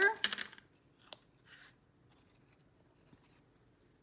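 Tape runner laying a short strip of adhesive on cardstock: a few light clicks, then a brief rasp about a second and a half in, followed by faint paper handling.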